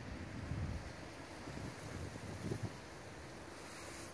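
Wind rumbling on the microphone in uneven gusts, with a faint hiss of outdoor noise behind it.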